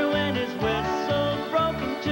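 Live country band playing an instrumental fill between sung lines: plucked strings over a brisk, even bass beat.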